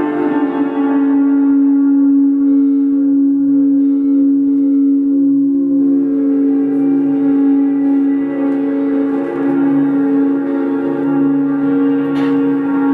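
Free-improvised experimental music: a sustained drone of one steady held note with many overtones, over a lower tone that pulses on and off, with an electronic, effects-laden quality.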